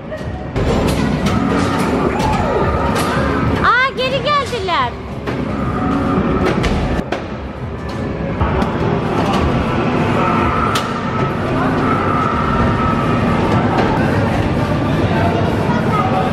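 Amusement-arcade din: game machines' music and electronic sound effects over a busy background, with scattered clicks and knocks and a short burst of warbling electronic tones about four seconds in.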